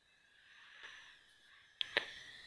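A faint breath close to the microphone, then two sharp clicks near the end.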